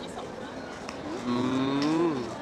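A woman's drawn-out, nearly level hesitation hum, about a second long, starting a little past halfway, over a faint murmur of a crowd.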